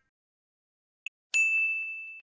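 About a second in, a brief click, then a single high bell ding that rings on and fades away.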